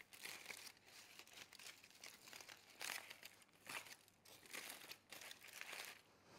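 Aluminium foil crinkling faintly in irregular bursts as it is peeled open from a freshly oven-roasted beetroot.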